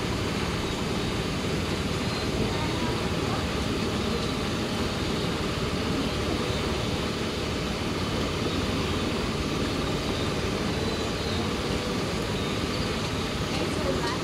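Steady rushing and bubbling of the swimming pool's underwater jets churning the water surface.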